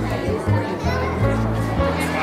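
Background music with a bass line of held notes, mixed with children's voices.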